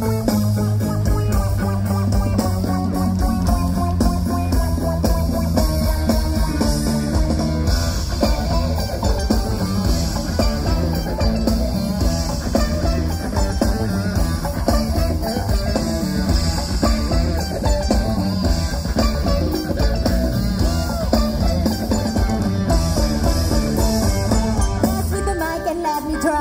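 Live band playing over a festival PA, heard from the crowd: drums, bass and guitar in a steady groove, with little or no singing in this passage.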